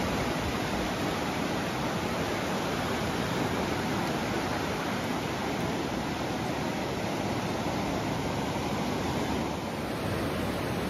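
Sea surf breaking and washing up a sandy beach, a steady, unbroken rush.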